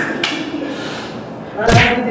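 Voices, with a short sharp knock just after the start and a louder, heavier thump near the end.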